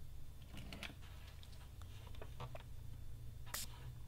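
Hands handling and pressing on a plastic bucket: faint scattered clicks and light rubbing, with one brief, brighter rustle near the end, over a low steady hum.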